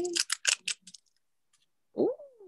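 Thin metallic nail-art transfer foil crinkling as it is peeled off a gel-coated fingernail: a quick run of crisp crackles lasting about half a second, then a few faint ones.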